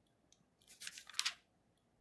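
A paper notebook page rustling and crackling as it is handled or turned, a faint sound of under a second about midway through.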